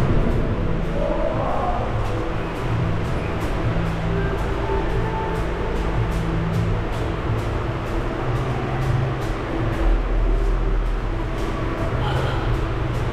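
Background music with a heavy bass and a steady beat.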